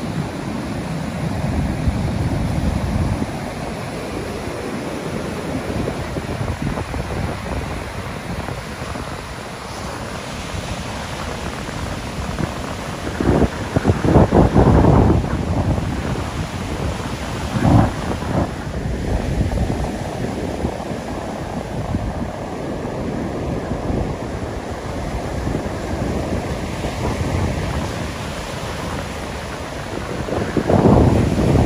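Rough Baltic Sea surf breaking and washing up a sandy beach, a steady noisy wash of waves. Wind buffets the microphone in a few strong gusts near the middle.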